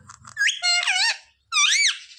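Rose-ringed parakeet making two squeaky calls. A wavering one starts about half a second in, and a short whistle that rises and falls comes near the end.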